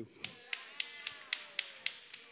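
A quick, even run of sharp taps, about four a second, with a faint falling tone underneath.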